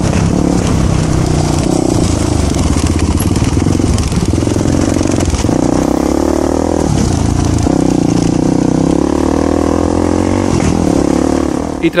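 Voge 300 Rally's single-cylinder engine running under load while the motorcycle is ridden on a dirt track, revs rising and falling with a few brief dips as the throttle is eased and reopened.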